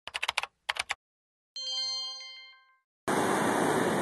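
An intro sound effect: a quick run of clicks, then a bright chime that rings out and fades over about a second. Near the end, a loud steady rush of surf starts.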